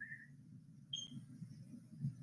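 Near silence in a pause of speech: faint room tone with two brief, faint high-pitched squeaks, one at the very start and one about a second in.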